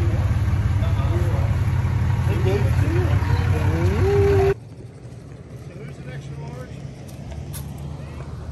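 Pickup truck engine idling with a loud low rumble while people talk nearby. It cuts off suddenly about halfway through, leaving quiet outdoor background with faint sounds.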